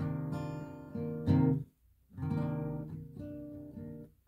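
Steel-string acoustic guitar, capoed at the first fret, strumming a B9 chord shape: the chord rings, is struck hard again about a second in and then stopped short, and after a brief gap is strummed once more and left to ring and fade.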